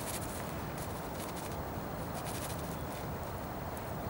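Faint rustles and small ticks of a PVA bag of pellets being handled and folded, over a steady low background hiss.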